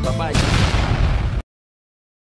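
An explosion-like boom sound effect breaks in over the end of the music about a third of a second in, lasts about a second, then cuts off suddenly into silence.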